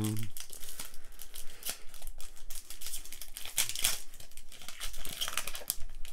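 A foil Pokémon booster pack wrapper being torn open and crinkled by hand, with a steady run of crackles as the pack is opened and the cards are worked out.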